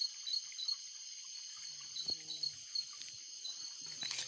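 Night insects calling steadily: several high, unbroken trills with one short chirp repeating about three times a second over them.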